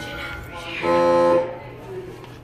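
A loud, flat-pitched buzzer tone held for about half a second, starting about a second in, over faint voices.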